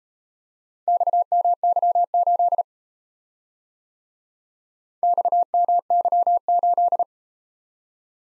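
Morse code sent as a keyed practice tone: one steady pitch, switched on and off in dots and dashes. Two runs of code, each about two seconds long, each sending a four-character letter-number group, with a pause of a few seconds between them.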